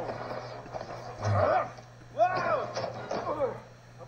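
Faint cartoon character voices: a few short exclamations that rise and fall in pitch, separated by brief pauses, over a low steady hum.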